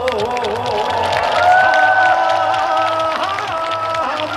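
A male singer performing a Korean trot song live: wavering notes with vibrato at first, then long held notes in the middle, over a steady beat of about two pulses a second, with the crowd clapping along.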